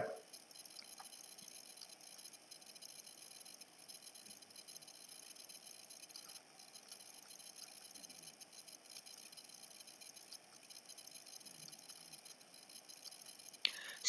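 Faint, steady background hiss of room tone, with no distinct events.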